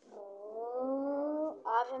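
A pet cat yowling: one long drawn-out meow, then a shorter second meow near the end.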